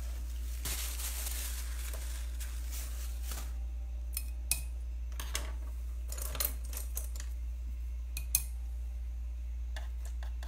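Light, sharp taps and clicks of small hard objects, about five of them, the loudest a little after eight seconds, over a steady low hum. A soft hiss sits in the first three seconds.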